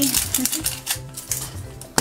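Thin plastic wrap crinkling and crackling as it is peeled off a plastic toy capsule, with a sharp click near the end. Background music with a steady low beat runs underneath.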